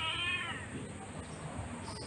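Siamese cat giving a long, high-pitched meow of protest while held for a claw trim; the call falls slightly in pitch and stops about half a second in.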